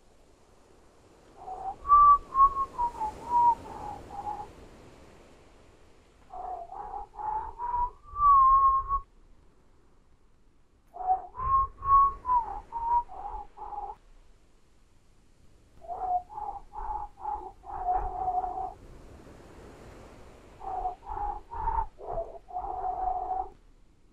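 Whistling whale-song sound effect: five short phrases of quick notes that step up and down in pitch, with pauses between them.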